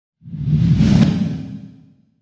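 A whoosh sound effect with a deep low rumble under it, swelling in just after the start, peaking about a second in and fading away by the end.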